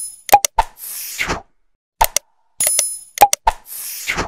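Animated subscribe-button sound effects: quick mouse-click and pop sounds with a short bright chime and a brief swish, the same pattern played twice.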